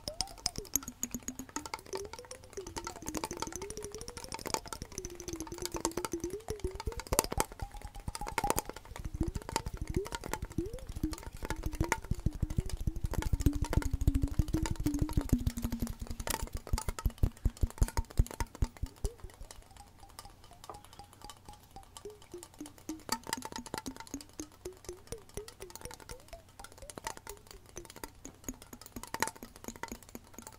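Fingers tapping quickly on a handheld cylindrical container, layered over soft lo-fi background music with a slow, wandering melody. The tapping is densest and loudest in the middle and thins out later.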